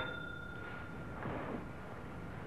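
Quiet soundtrack hiss with a faint steady high tone that stops a little over halfway through, and a faint brief rustle of movement.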